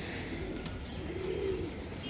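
Domestic pigeon cooing: one low coo that rises and falls, about a second in.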